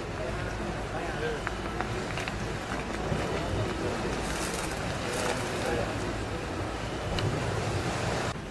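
Indistinct voices over a steady outdoor background noise, with wind on the microphone.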